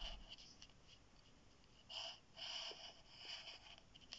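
Faint scratching of a pen drawing lines on a sheet of paper, in a few separate strokes: one at the start and a longer run from about halfway to near the end.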